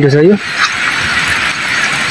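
Spring water trickling and splashing from a seep in a rock face, a steady hiss. A drawn-out pitched voice fades out about half a second in.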